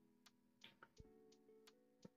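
Near silence in a pause between narrated phrases: a few faint, scattered clicks, and from about a second in a faint held low tone.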